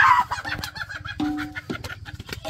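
A chicken squawking loudly at the start, then clucking in short notes, with many small rustles and clicks from the plants.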